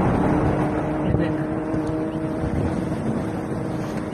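Steady road and wind noise of a moving car, heard from inside the cabin, with a faint steady hum held from just after the start to near the end.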